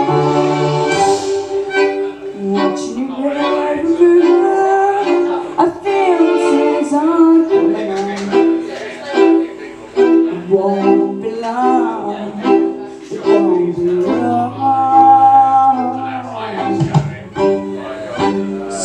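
Amplified violin played live, a bowed melody of repeated notes and sliding pitches, over sustained low backing notes.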